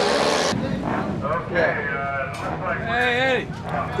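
Indistinct voices of people talking, with a brief burst of rushing noise at the very start.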